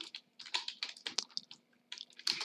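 Typing on a computer keyboard: quick, uneven runs of keystrokes.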